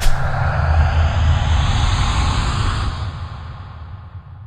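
Logo-reveal sound effect: a sudden hit, then a loud rushing whoosh with a deep rumble that holds for about three seconds and fades away near the end.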